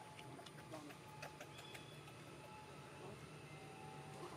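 Quiet outdoor ambience, close to silence, with scattered faint clicks and a few brief thin tones.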